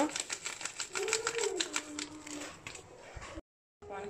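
Rapid light ticking and rustling as a plastic packet of ground nutmeg is shaken and tapped over a pot of meat sauce. The sound stops abruptly near the end.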